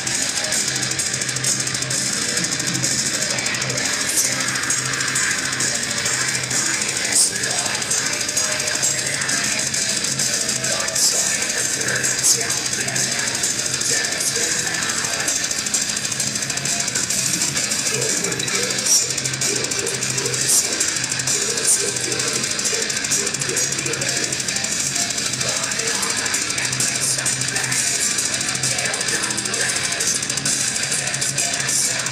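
Melodic death metal band playing live, with distorted electric guitars and drums, dense and loud with no break. Heard from within the crowd.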